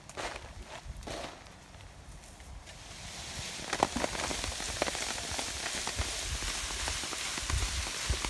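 A mulberry tree being shaken: leaves rustling and ripe berries pattering down onto a tarp. The dense crackling patter builds up about three seconds in.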